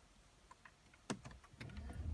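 A faint tick or two, then a sharp click about a second in as the BMW 7 Series F01's start button is pressed, followed by a low electric hum building up as the car's systems power on with the ignition, engine not running.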